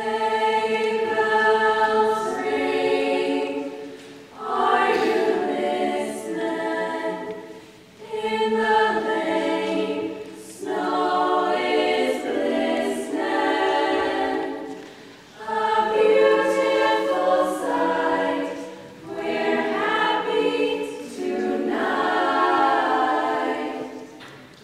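Female a cappella choir singing in harmony, in phrases of about four seconds with a short breath between each.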